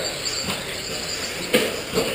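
Electric radio-controlled 2wd buggies running on a dirt track: a high-pitched motor whine over steady noise, with a sharp click about half a second in and a louder one about a second and a half in.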